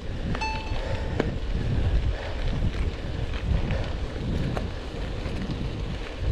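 Wind buffeting the microphone of a chest-mounted GoPro Hero 8 on a mountain bike ridden along a dirt road, a steady low rumble. About half a second in, a brief thin high tone sounds for under a second.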